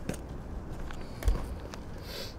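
Footsteps on paved ground over a steady low rumble, with a single dull thump a little past halfway.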